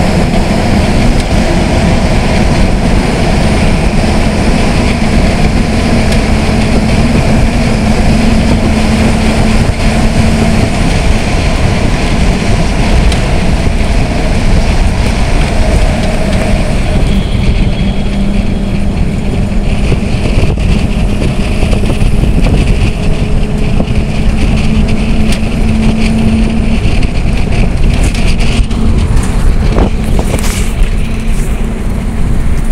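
Passenger train running, heard from inside the carriage: a steady loud rumble with a continuous hum that steps slightly lower partway through.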